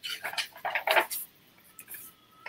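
Sketchbook pages being turned and handled close to a webcam microphone, with three quick rustles of paper in the first second or so and a faint tick or two near the end.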